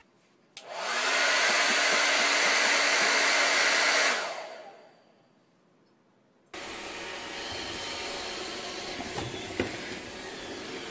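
An electric appliance's fan motor switches on about half a second in, its hum rising as it spins up. It runs steadily with a loud rush of air for about three seconds, then winds down and stops. Near the end a quieter steady whir with faint clicks comes in from a Roomba robot vacuum running on the floor.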